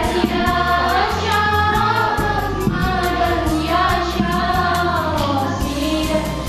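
A song with voices singing together over a backing track with a steady beat and bass.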